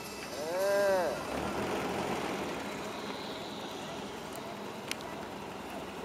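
A pickup truck driving hard through deep snow, its engine and churning tyres making a steady rushing noise that slowly fades as it pulls away. About half a second in, a person lets out one drawn-out 'whoa' that rises and falls in pitch.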